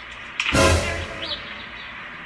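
A smartphone thrown down hard onto pavement: one loud crash about half a second in, with a heavy low thump that rings out briefly.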